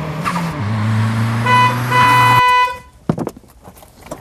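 Smart fortwo city car driving up with a steady engine hum that shifts in pitch about half a second in, then two honks of its horn, a short one and a longer one.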